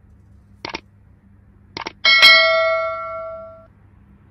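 Subscribe-button animation sound effect: two short mouse clicks about a second apart, then a loud, bright bell ding that rings out for about a second and a half.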